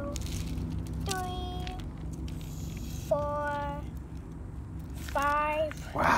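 A child's voice making three drawn-out vocal sounds at a steady pitch, about two seconds apart, over a low steady background rumble.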